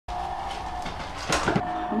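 Rummaging inside a plastic portable cooler box holding vaccine vials: a short clatter of plastic and rustling about a second and a half in, over a steady hum.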